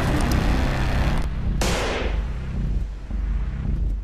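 Horror-trailer sound design: a deep, pulsing rumble, with a sharp hit about a second and a half in that trails off.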